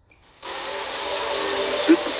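A steady rushing, blower-like noise that starts about half a second in and holds at an even level.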